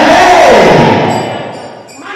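A loud, drawn-out shouted cry that rises and then falls steeply in pitch, over crowd noise of a praying congregation, fading out in the second half.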